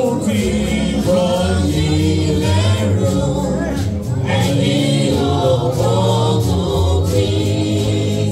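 Gospel choir singing with a steady, sustained bass accompaniment.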